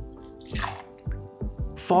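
Gin poured from a jigger into a glass, a short splash of liquid about half a second in, over background music with a steady beat.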